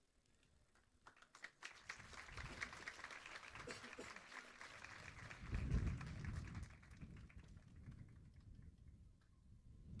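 Audience applauding faintly, starting about a second in and dying away by about seven seconds, with a brief low rumble near the middle.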